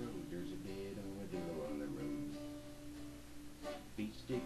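Acoustic guitar strumming a country tune, an instrumental passage between sung lines.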